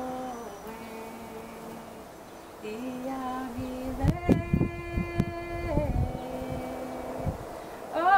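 A woman singing unaccompanied in long, held notes that step from pitch to pitch, with a few low thumps in the middle.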